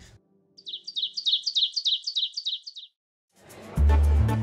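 A bird chirping in a fast, even series of short, high, falling notes for about two seconds. After a brief gap, music with a deep bass line starts near the end.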